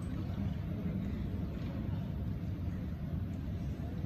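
Steady low rumble of background noise in a large hall, with no clicks from play on the carrom board.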